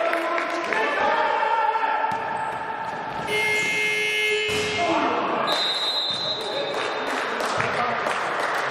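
Players calling out on a basketball court, with the ball bouncing. About three seconds in, the scoreboard buzzer sounds for just over a second, ending the period with the clock at zero. A high, steady referee's whistle follows about a second later.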